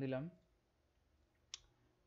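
A single computer mouse click about one and a half seconds in, committing a typed cell entry.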